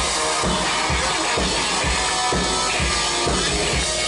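Live rock band playing: electric guitar over a drum kit, with a steady kick-drum beat.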